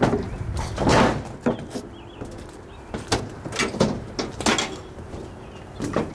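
Irregular knocks and scuffs, about half a dozen over a few seconds, from someone moving low across concrete stadium steps littered with broken plastic seats.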